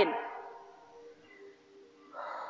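The end of a woman's spoken word trailing off in a reverberant hall, then faint background music with a few held tones.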